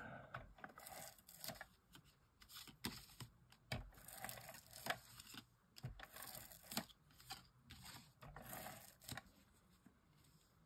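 A refillable adhesive tape runner laying glue on a paper tag in short strokes: faint, with scattered clicks and brief scratchy runs.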